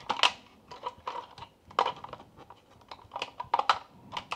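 Hard plastic parts of a clip-on bidet attachment clicking and clacking as they are handled and pressed together: irregular sharp clicks, loudest about a quarter second in and near two seconds.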